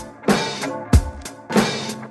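Old-school West Coast hip hop instrumental beat: a drum kit pattern of kick and snare hits at a steady, laid-back tempo, about three hits every two seconds, over a deep bass line and held higher tones.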